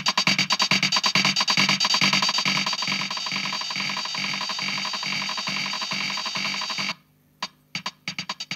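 Casio CZ-230S bossa nova rhythm and synth sound played through an Alesis Midiverb 4 delay preset. The fast repeating hits blur into a dense wash of echoes. Near the end the sound cuts out for under a second as the unit switches to the next preset, and then the rhythm starts again.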